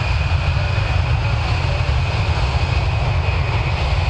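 Boeing C-17 Globemaster III's four turbofan jet engines running up to takeoff power: a steady loud rumble with a high, steady whine over it.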